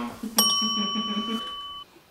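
A single bright bell-like ding, struck once about half a second in and ringing steadily for about a second and a half before cutting off suddenly. Under it, a man's voice laughs in short pulses.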